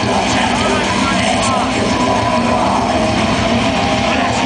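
Live extreme metal band playing at full volume: a dense, unbroken wall of heavily distorted guitars, bass and fast drumming, with a yelled vocal over it, recorded from within the crowd.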